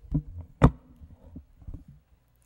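Handling noise on a lectern microphone: a few low thumps and one sharp click about two-thirds of a second in.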